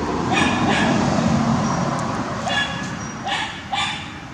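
Baby macaque giving several short, high-pitched cries, calling for its mother. A low rumbling noise runs under the first couple of seconds.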